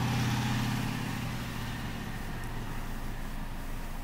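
Steady low engine-like hum that fades away over the first two seconds, leaving a faint hiss.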